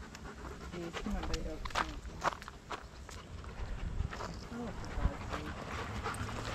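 A dog panting while being walked, with scattered footstep clicks and a few snatches of quiet talk.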